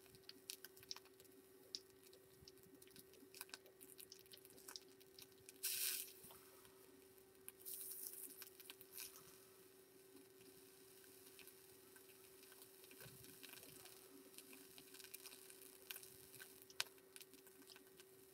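Faint sizzling of the wire coil in a Steamboy Storm Rider 2.3 rebuildable atomizer, boiling off leftover e-liquid as it is fired in short, gentle pulses to oxidise the mesh wick. Hissing comes in short spells, about six seconds in and again a second or so later, among small clicks over a faint steady hum.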